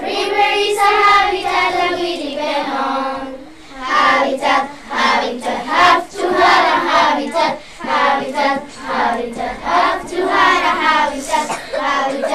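A group of children singing together, holding one long line for the first few seconds, then, after a brief dip, moving into shorter, quicker sung syllables.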